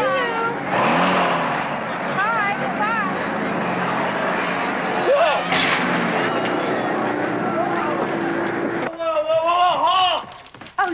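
Open military jeep driving, its engine and road noise steady under the passengers' shouts and laughter. The noise cuts off sharply near the end, and a voice follows.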